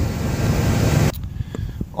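The truck running, a steady noisy rumble heard from beside the rear wheel, which cuts off abruptly about a second in, leaving only a few faint clicks.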